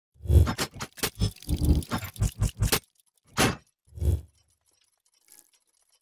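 Logo-intro sound effects: a quick run of about a dozen sharp hits over the first three seconds, then two more separate hits about half a second apart.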